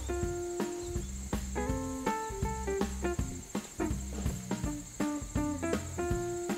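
Background music of plucked string notes in a slow melody over a bass line, with a steady high chirring of crickets beneath it.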